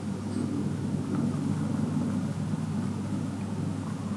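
A calico cat purring up close: a steady low rumble that swells and eases slowly, as with its breathing.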